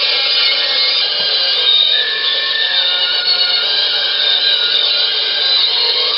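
Music from an iPod fed through a voice changer chip and played on a small speaker, coming out as a dense layer of sustained electronic tones. One tone steps down in pitch a little before the halfway point.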